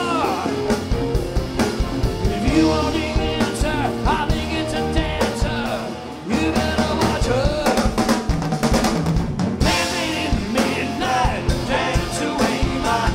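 Live rock band playing an instrumental jam: drum kit, electric guitar, bass and keyboards, with a brief dip in loudness about six seconds in before the drums come back in.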